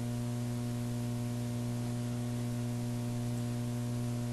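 Steady electrical mains hum with a hiss underneath, unchanging throughout, with no other sound.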